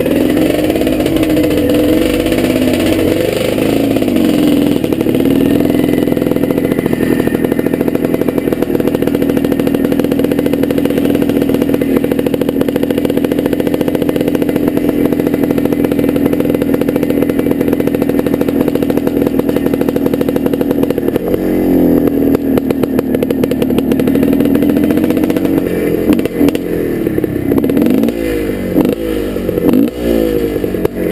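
Dirt bike engine running at low speed, heard close up from a camera mounted on the bike, holding a steady note for long stretches with rises and falls in pitch as the throttle is opened and closed, briefly a few seconds in, again past the middle, and several times near the end.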